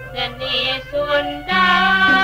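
Sundanese gamelan degung music with a woman's singing voice. About halfway through it gets louder, with a held melodic line.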